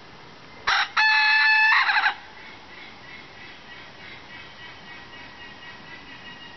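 Rooster crowing once: a brief opening note, then a long held call of about a second that breaks up at its end.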